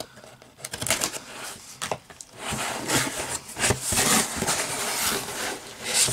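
Scissors slitting the packing tape on a cardboard shipping box, with a few light scrapes and clicks, then louder, continuous rubbing and scraping of cardboard from about two and a half seconds in as the flaps are pulled open.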